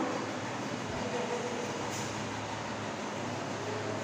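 Steady background room noise, an even hiss with a low hum underneath, and no speech.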